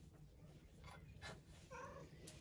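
Near silence, with a few faint clicks and a short, faint pitched call near the end.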